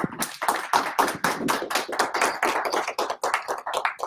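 Audience applauding, many hands clapping together, the claps thinning out and stopping near the end.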